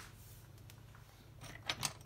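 Near silence: quiet room tone with a steady low hum, then three faint clicks close together near the end.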